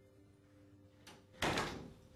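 An interview-room door shutting with a single thud about one and a half seconds in, dying away over about half a second.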